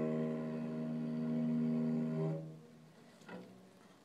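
Cello holding the final bowed note of the tune, which swells slightly and then dies away about two and a half seconds in. A brief soft knock follows a moment later.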